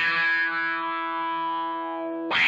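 Electric guitar through a DOD FX25B envelope filter (auto-wah): a single held chord rings out and slowly fades. As it decays, its bright top end steadily closes down, the envelope filter sweeping shut.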